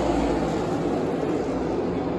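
A field of NASCAR Cup Series stock cars with V8 engines running around the track, heard as a steady, dense mass of engine noise.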